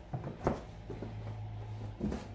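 Books being taken out of a cardboard box by hand: a few short knocks and shuffles of books against each other and the box, the clearest just under half a second in.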